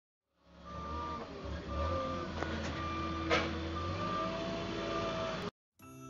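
Truck-mounted forklift running beside a flatbed delivery truck, with a steady low engine hum and a warning beeper sounding about once a second. A sharp clack about three seconds in; the sound cuts off suddenly just before the end, where music begins.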